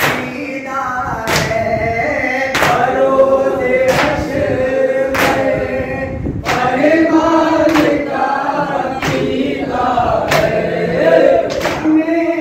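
A group of men chanting a noha in unison, a Shia lament sung in Urdu, with the whole group striking their chests together (matam) about every 1.3 seconds, a sharp slap that keeps the beat.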